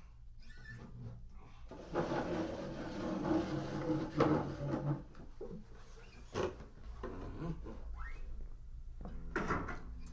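Room sounds of people moving about at close range: shuffling and handling noise, with sharp knocks about four and six seconds in and a short rising creak near the end.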